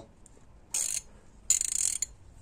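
Wera Zyklop half-inch ratchet being worked by hand, giving two short bursts of rapid fine clicking from its pawl mechanism: one just under a second in and a longer one near the end.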